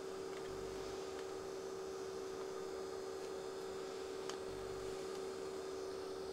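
A steady, even-pitched electrical hum, with a few faint light clicks.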